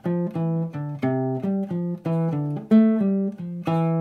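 Nylon-string classical guitar playing single plucked notes at about four a second, a stepwise line in eighth notes. It is a C major scale exercise in which pickup notes lead into each target note.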